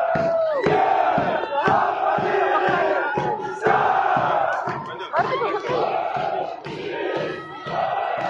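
Many voices shouting long, wavering cheers over the stamping of a marching infantry column's boots, about two steps a second.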